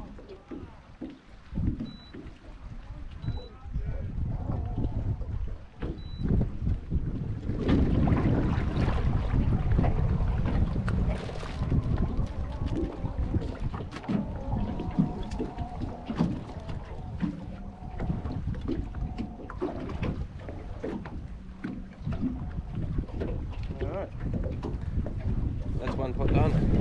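Wind rumbling on the microphone, with scattered knocks and rattles of crab pots and rope being handled in an aluminium dinghy. The rumble grows louder about a third of the way in.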